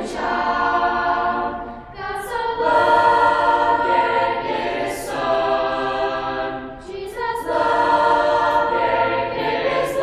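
Mixed youth choir of teenage boys and girls singing a cappella in harmony, without accompaniment. The held chords break briefly about two seconds in and again about seven seconds in, with crisp "s" sounds at the phrase ends.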